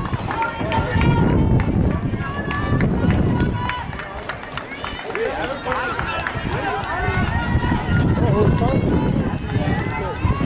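Indistinct voices of spectators talking close to the microphone, overlapping and not clear enough to make out, over a low rumbling noise that eases off briefly about four seconds in.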